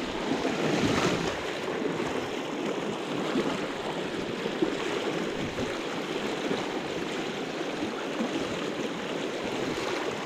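Small mountain trout stream running high and fast after heavy rain, its water rushing steadily over rocks and riffles.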